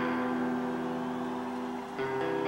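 Electric guitar chord held and ringing out, fading slowly.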